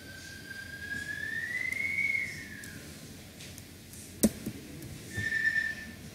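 A thin whistle-like tone that slowly rises in pitch and then falls away, a single sharp click about four seconds in, and then a short steady whistle-like tone near the end.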